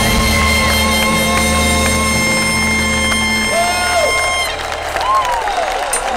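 Live band holding a final sustained chord that stops about four and a half seconds in, then an audience cheering and whistling.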